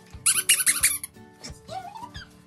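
Dog's squeaky toy squeaked in a quick run of about seven high squeaks within the first second as the vizsla mouths it.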